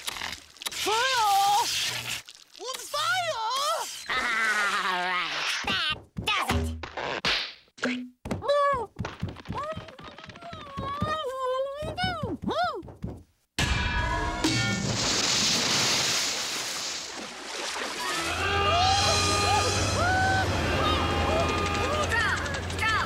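Cartoon soundtrack: a music score with sliding, wavering pitches, character vocalizations and comic thunks. It cuts off suddenly about two-thirds of the way in, giving way to a rushing, splashy noise under sustained music.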